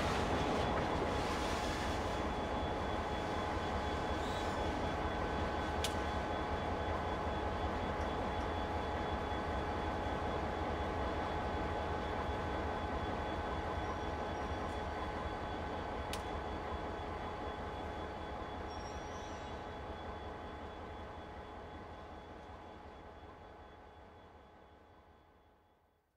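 Freight cars moving in a railyard: a steady rumble with a few held high tones over it and two sharp clicks, fading out over the last several seconds.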